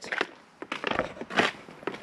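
Handling noise from a handheld action camera: about five light, irregularly spaced knocks and scuffs as it is turned around.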